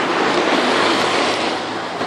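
Steady rushing street noise outdoors, easing slightly near the end.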